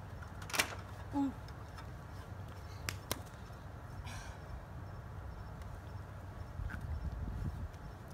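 A few light clicks and knocks over faint outdoor background noise: a person climbing down a stepladder and handling a dropped phone and its loose battery and back cover on concrete.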